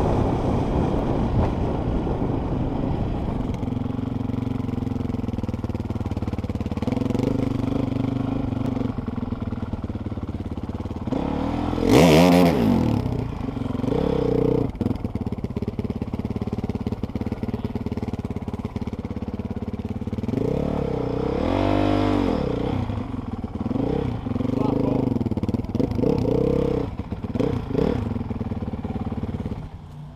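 Dirt bike engine running at low speed as it is ridden at a walking pace, with a sharp blip of the throttle about twelve seconds in and another rise and fall in revs a little past the middle. The engine drops to a much quieter note just before the end as the bike stops.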